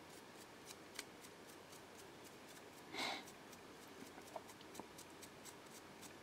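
Faint scratching of a nearly dry paintbrush's bristles flicked quickly over a plastic miniature during dry-brushing, with scattered light ticks and one brief, louder rustle about three seconds in.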